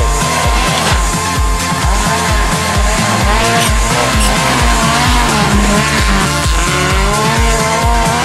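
A Fiat Uno rally car's engine revving up and down as it slides through dirt corners, mixed with music that has a steady thumping beat of about two pulses a second.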